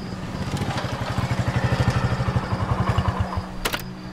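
Motorcycle engine running with a fast, even exhaust pulse as the bike rolls up, loudest in the middle and dying away shortly before the end. A single sharp click follows near the end.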